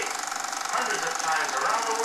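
Film projector running with a fast, even mechanical clatter, under a muffled voice from the film's soundtrack.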